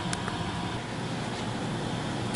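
Steady mechanical hum with a hiss from a running air-conditioning system.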